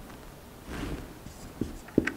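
Marker pen writing on a whiteboard, soft scratching strokes, followed near the end by two short sharp taps, the second the loudest.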